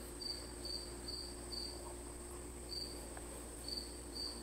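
A cricket chirping faintly: short high chirps a few times a second, with uneven pauses, over a low steady hum.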